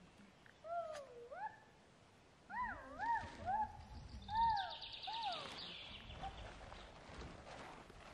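A run of short animal calls, each rising and then falling in pitch, about two a second, with a higher chattering in the middle.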